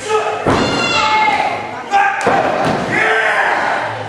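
A wrestler's body slammed onto the wrestling ring's canvas mat, a loud thud about half a second in, followed by another impact around two seconds in, with shouting voices around them.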